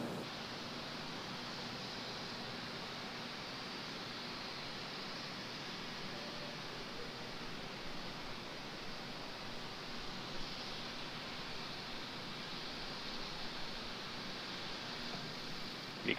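Steady, faint hiss with no distinct events: the background noise of a live broadcast's audio feed.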